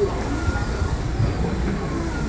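Steady low rumble and hum of an electric limited express train standing at the platform with a door open, as passengers step aboard.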